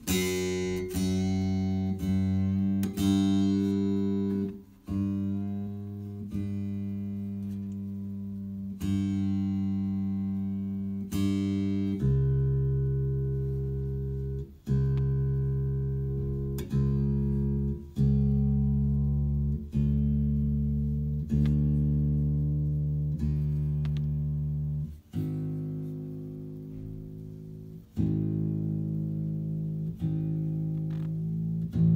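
Bass guitar strings plucked one note at a time during tuning, each pluck left to ring and fade before the next, about every one and a half to two seconds. The note drops to a lower, deeper string about twelve seconds in and changes again near the end.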